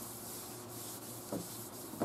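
Cloth rag wiping across a primed fiberglass bumper, a faint steady rubbing, with one soft knock about a second and a half in. It is the wax-and-grease-remover wipe-down that lifts dust off the surface before painting.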